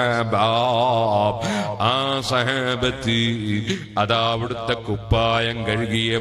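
A man's voice chanting in a melodic Islamic devotional style, long drawn-out phrases with a wavering, ornamented pitch. A steady low hum runs underneath.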